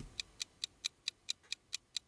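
Ticking stopwatch sound effect, a steady, fast click about four to five times a second, marking time on an on-screen timer while a voice command to the smart speaker is carried out.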